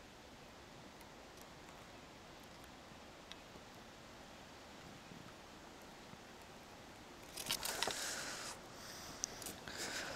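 Faint steady outdoor background, then about seven seconds in a brief burst of rustling lasting about a second, followed by a few small clicks: handling noise as the angler deals with a just-landed carp before unhooking it.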